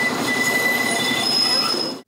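Low-floor tram rounding a tight curve on the rails, its wheels squealing: a steady high squeal over the running noise, with a second, higher note joining near the end.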